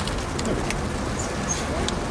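Quiet eating: a bite and chewing of a biscuit ice cream sandwich, with a few light crinkles of its foil wrapper. Two short high chirps come about halfway through.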